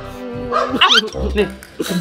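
Background music with a short cry that glides up and down in pitch, about three-quarters of a second in.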